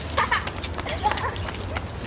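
Footsteps with short, faint sounds from a dog.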